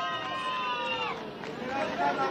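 Drawn-out, voice-like calls from people in the crowd, several pitches at once, falling in pitch and fading over the first second and a half, with fainter calls after.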